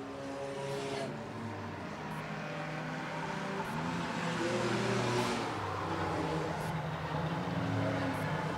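Several enduro race cars running at speed around a short oval track, their engine notes overlapping. The sound swells as a car passes close by on the front stretch about four to five seconds in, with another car coming by near the end.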